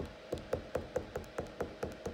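Crayon tapped and dabbed on paper in quick short strokes, drawing sparkles: a steady run of light taps, about five a second.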